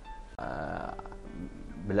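A man's short throaty vocal sound, like a drawn-out hesitation "eh" or a stifled burp, lasting well under a second, heard between his words.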